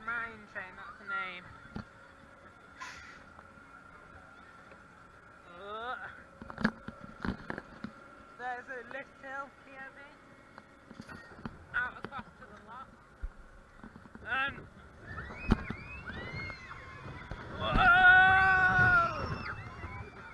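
Voices and clacks on a mine-train roller coaster, with a long cry from a rider near the end that rises and then falls in pitch. The cry is the loudest sound.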